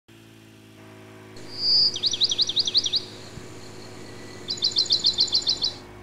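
A songbird singing two quick phrases of rapid, high, repeated notes, the first about two seconds in after a short whistle and the second near the end, over a faint steady low hum.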